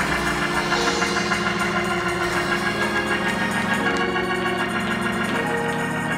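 Organ playing slow, held chords that change a few times.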